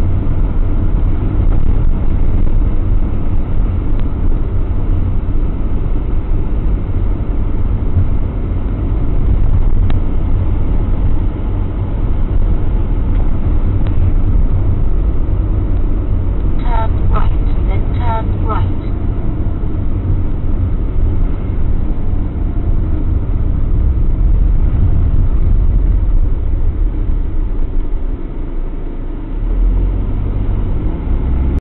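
Motorhome driving steadily at about 90 km/h, heard inside the cab: a constant low rumble of engine and road noise. About two-thirds of the way through come four short high tones in quick succession.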